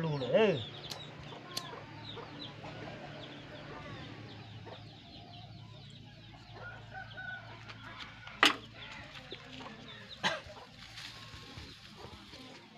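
Chickens clucking, with a loud curving call about half a second in. Under it runs a low steady hum, and there are two sharp clicks late on.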